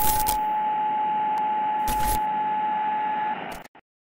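Electronic static-hiss sound effect with a steady high beep tone over it and a few glitchy crackles, starting abruptly and cutting off suddenly about three and a half seconds in.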